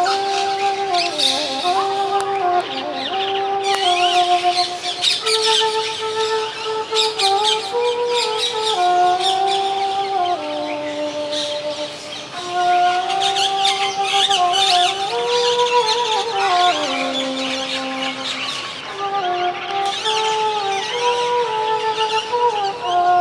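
Bamboo transverse flute (bansuri) playing a slow melody of held notes that step and slide between pitches, with birds chirping all around it.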